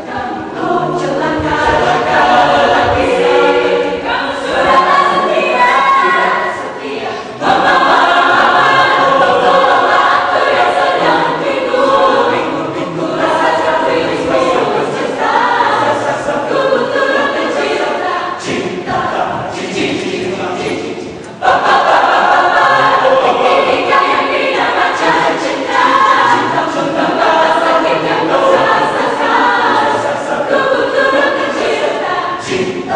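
Mixed-voice choir of men and women singing a pop-song arrangement in full harmony. The sound swells suddenly louder and fuller about a quarter of the way in and again about two-thirds of the way through.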